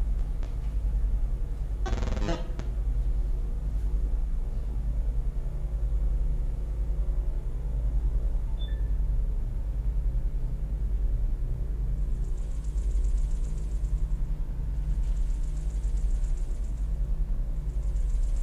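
A steady low rumbling drone, swelling and fading in loudness. A short rasping noise comes about two seconds in, and high buzzing patches come in the last several seconds.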